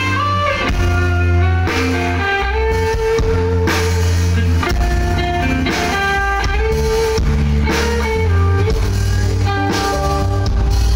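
Live band playing an instrumental passage with no vocals: electronic keyboard carrying held melody notes over electric guitar, a heavy low bass line and a steady drum-kit beat.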